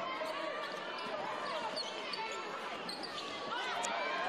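A basketball being dribbled on a hardwood court, with steady arena crowd chatter.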